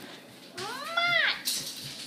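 A single high, meow-like call, rising then falling in pitch, about half a second in and lasting under a second.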